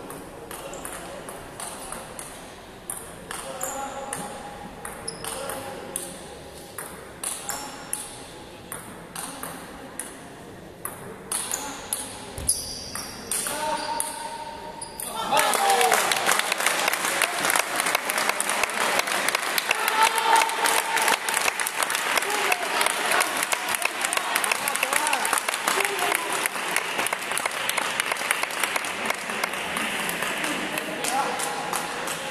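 Table tennis rally: the ball clicking off bats and table in separate sharp strokes that echo in a large hall. About halfway through the point ends, and a sudden, louder burst of crowd clapping and shouting begins and lasts to the end.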